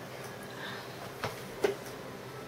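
Two short knocks about half a second apart, the second louder, over the steady background hiss of a quiet room.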